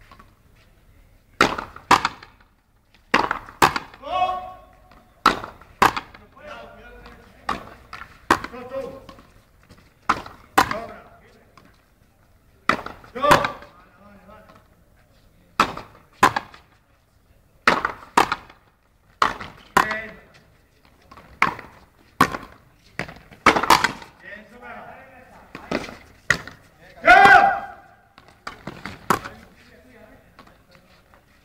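Frontenis rally: the ball cracks sharply off the rackets and the front wall in a long, irregular run of hits, roughly one a second.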